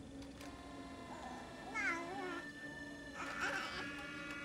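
An infant whimpering and crying in a few short cries that rise and fall in pitch, over a soft sustained music score.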